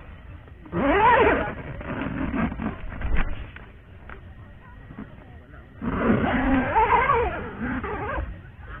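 A voice speaking two short phrases, a spoken good-night, with some rustling and a sharp knock in the pause between them.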